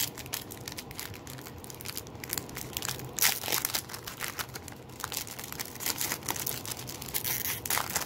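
Foil wrapper of a trading card pack crinkling and tearing as it is ripped open by hand, with the loudest rip about three seconds in.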